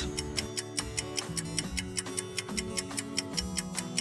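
Countdown-timer ticking sound effect, rapid even ticks several times a second, over background music of held notes.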